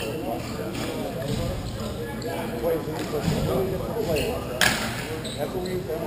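Hockey stick and puck knocks during rink play under players' voices, with one sharp crack about four and a half seconds in.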